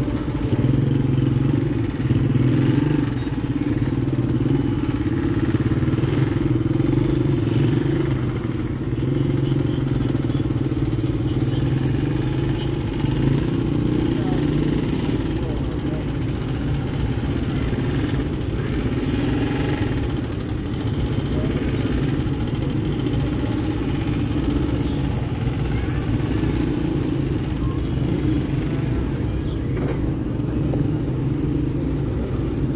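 Motorcycle engine idling steadily, with only slight changes in pitch, amid slow-moving traffic, with voices around it.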